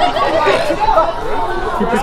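Several men talking and calling out over one another, overlapping voices of spectators around a boxing ring.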